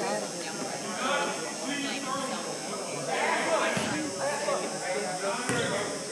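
Indistinct talking from spectators and players in a gymnasium, heard as a steady background of voices with no clear words.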